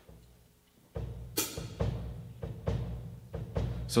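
Drum kit bass drum playing the steady bossa nova 'heartbeat' pattern, starting about a second in, with a sharp click among the first strokes.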